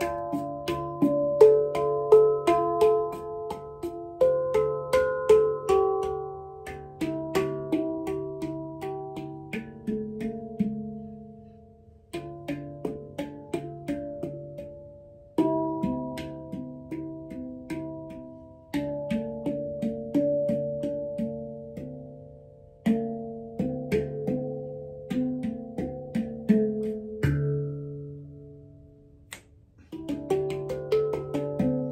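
Handpan played with bare hands: quick runs of struck notes that ring on and overlap, with a low note sounding again and again beneath the higher ones. The playing comes in phrases, the notes dying away briefly about twelve seconds in and again near the end.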